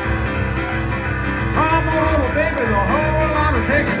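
Live country band music through a concert PA, recorded from the audience: a steady low beat underneath, with a lead line that bends and slides in pitch coming in about a second and a half in.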